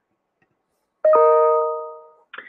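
A single electronic chime about a second in: a bell-like tone of several pitches that fades out over about a second.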